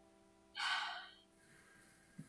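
A person's single short, breathy gasp or sigh heard through a video call, starting about half a second in and lasting under a second, with near silence on either side.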